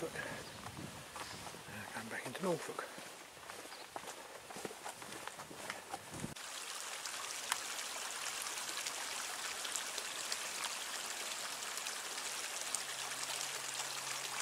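A voice speaking indistinctly in the first few seconds, then, after a sudden cut, a steady outdoor hiss with a few faint clicks.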